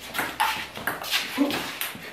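Celluloid table-tennis ball clicking off bats and the table in a quick rally, several sharp clicks. A short vocal sound about one and a half seconds in is the loudest moment.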